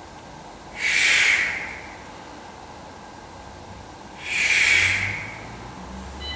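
Two forceful breaths, each about a second long and about three and a half seconds apart, from a man doing prone dorsal raises: a breath pushed out with each lift of the upper body.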